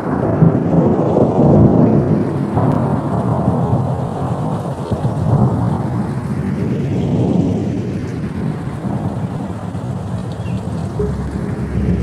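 Loud thunder-like rumbling noise used as a sound effect. It swells in the first couple of seconds and then slowly eases, with a slow sweeping hiss above the rumble.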